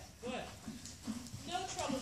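Hoofbeats of a trotting horse on soft indoor arena footing, with a voice talking over them, loudest about a third of a second in and near the end.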